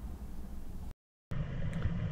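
Faint, steady low background hum (room tone) between narration, broken about a second in by a brief dropout to total silence at an edit cut, after which a similar faint steady hum resumes.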